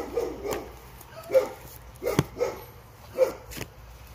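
A dog barking: about eight short barks, mostly in pairs roughly a second apart, stopping shortly before the end.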